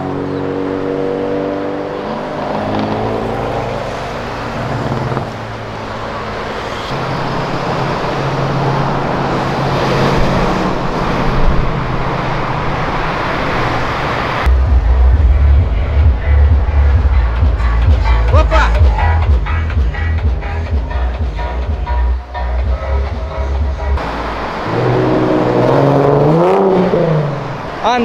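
Street traffic with car engines passing and accelerating, their pitch rising and falling. About fifteen seconds in, bass-heavy music with a beat cuts in for roughly ten seconds, then stops abruptly and engine sounds return near the end.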